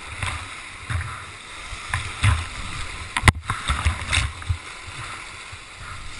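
Whitewater rapids rushing and splashing close around a kayak, with irregular low thumps and one sharp knock about three seconds in.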